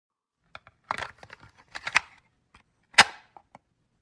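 A series of irregular sharp clicks and pops, the loudest about three seconds in.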